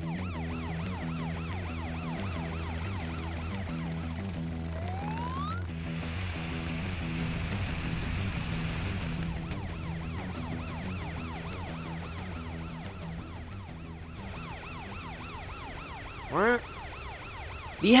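Cartoon police-car siren wailing in fast, repeated rising-and-falling sweeps over background music. A rush of noise takes over in the middle, from about six to nine and a half seconds in, before the siren sweeps return.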